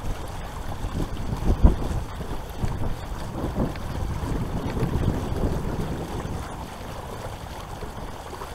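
Wind buffeting the camera microphone in irregular low gusts, over water lapping and splashing against a moving plastic kayak's hull. The loudest gust or thump comes about one and a half seconds in.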